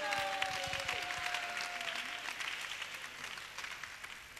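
Audience applause that dies away steadily over a few seconds. A faint held tone sounds under it in the first two seconds.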